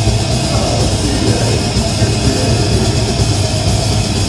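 Heavy metal band playing live, with loud, dense distorted electric guitar.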